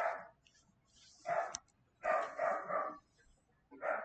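A dog barking a few times in short, separate barks, faint and in the background.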